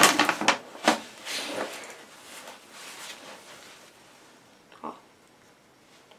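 Fabric rustling and a couple of sharp knocks as a school backpack is swung onto the shoulders and its straps settled, most of it in the first two seconds.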